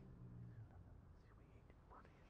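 Near silence in a small room: a low held note dies away about half a second in. What remains is room tone with faint whispering, the quiet private prayer said at the altar before Communion.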